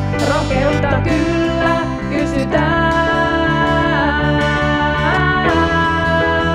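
Band music with guitar: a lead line of long held notes that slide up and down in pitch over a steady accompaniment.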